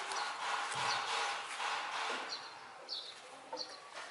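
Birds calling in the background: a hoarse, rushing sound for about the first two seconds, then three or four short high chirps.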